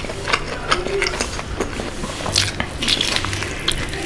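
Close-miked mouth sounds of chewing crispy, sauce-glazed boneless fried chicken: a run of short crunches and wet, sticky clicks, densest about two and a half to three seconds in.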